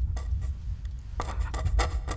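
Pencil scratching quickly across paper in short, rasping strokes, several a second, starting a little past halfway, over a steady low rumble.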